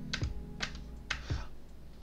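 Computer keyboard keys pressed about four times, separate short clacks, as lines of R code are run one by one, over a faint steady low hum.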